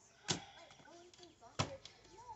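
Two sharp knocks of a tarot card deck on a tabletop, about a second and a half apart, with faint murmuring in between.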